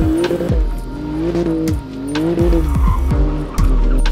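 A Porsche 911 GT2 RS drifting, its engine note rising and falling twice and its tyres squealing, mixed with a music track that has a steady kick-drum beat.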